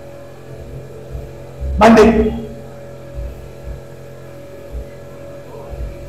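Low, steady electrical mains hum with faint low thuds, broken about two seconds in by one short, loud vocal sound from a man, a single word or exclamation.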